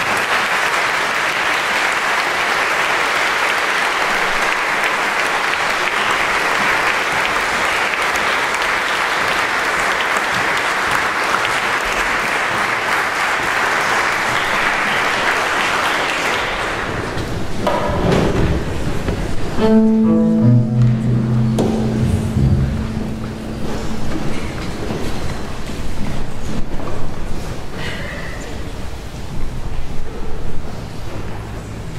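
Audience applauding steadily for about sixteen seconds, fading out. A few seconds later come short held bowed-string notes at steady pitches as the instruments tune.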